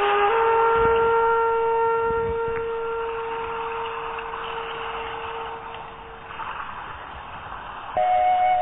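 Meditation background music: a flute holds one long note that slowly fades over a soft hiss. Fresh flute notes come in suddenly near the end.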